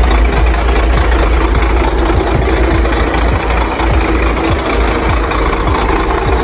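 Chevrolet C60 truck engine idling with a steady low rumble.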